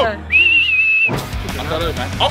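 A whistle blown once: a single steady high note lasting just under a second, starting a moment in, with shouting just before it and music and voices coming back after it.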